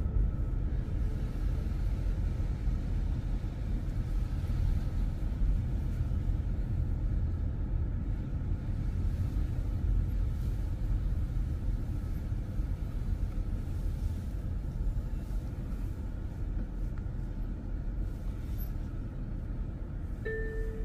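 Car driving slowly: a steady low rumble of engine and road noise, with no sharp events.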